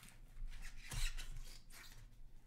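Small cardboard card box being handled, its lid sliding and rubbing against the box: a few short scraping, rubbing noises, the loudest about a second in.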